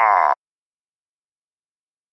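A man's short shouted vocal exclamation that cuts off abruptly about a third of a second in, followed by dead silence.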